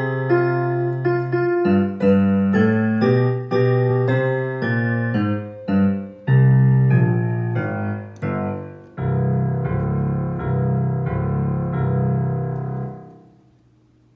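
A digital piano played by hand: a tune of separate struck notes over bass notes, then repeated low bass chords about twice a second for some four seconds that die away just before the end.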